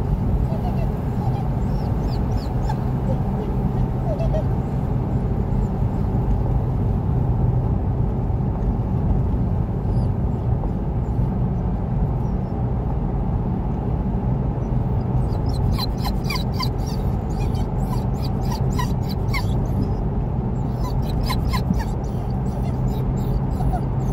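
Steady engine and tyre drone heard inside a moving car's cabin. A dog whimpers in short runs about two-thirds of the way through and again near the end.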